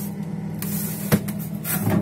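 Plastic freezer drawer being handled and slid, with a sharp knock about a second in and a few lighter clicks, over a steady low hum.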